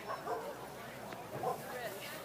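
A dog barking, with two louder barks, one just after the start and one about one and a half seconds in, amid people's voices.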